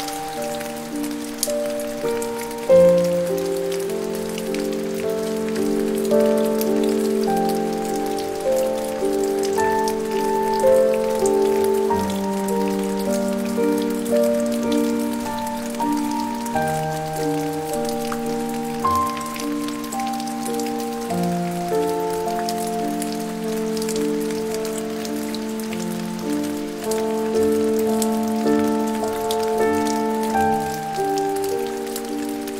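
Slow, soft piano music of long held notes changing every second or two, layered over a steady rain sound with fine patter of drops.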